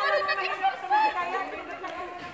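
Several women talking at once, overlapping chatter of a small group.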